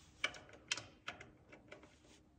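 Faint irregular metallic clicks and ticks as an M12x1.25 magnetic drain plug is threaded by hand into a freshly tapped drain hole in a transmission case. There are two sharper clicks in the first second, then lighter ticks. The cleaned threads let the plug go in easily.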